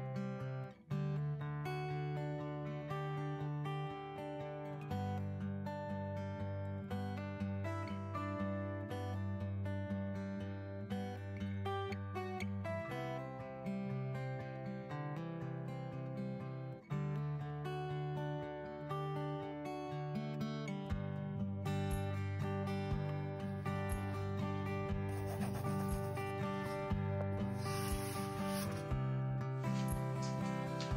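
Background music led by acoustic guitar, with a brief break about a second in and another about seventeen seconds in.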